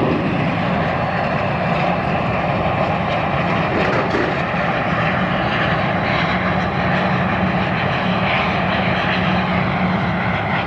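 Embraer ERJ-145 regional jet's rear-mounted Rolls-Royce AE 3007 turbofans running as the jet rolls along the runway: a steady, loud jet noise with a low hum underneath.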